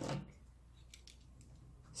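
Quiet room with a few faint, short clicks from hands handling small objects on a worktable.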